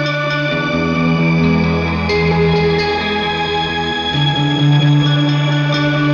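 Electric guitar played through the Keeley Caverns V2's shimmer reverb set to a high shimmer level, so octave-up overtones shimmer above the notes. Sustained, ringing chords change about a second in and again around four seconds, with a few lighter picked notes over the wash.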